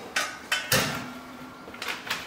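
A few sharp knocks and clicks of kitchen utensils and containers being handled and set down, the loudest about three-quarters of a second in.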